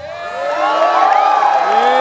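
Concert crowd cheering and whooping as the band's electric guitar music stops, many voices rising and falling in pitch and growing louder about half a second in.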